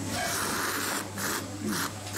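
A person slurping soy-sauce ramen noodles: a long airy slurp through about the first second, then a shorter slurp near the end.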